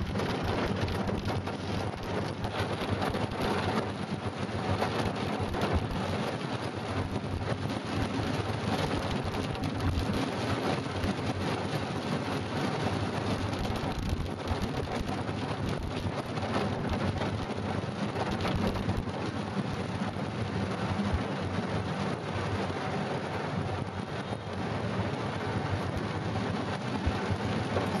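Heavy rain falling on a car's roof and windshield, heard from inside the cab: a dense, steady patter of drops.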